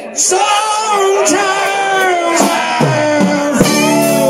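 Live rock band playing, a man singing over electric and acoustic guitars, bass and keyboard; the music comes back up from a brief lull just after the start.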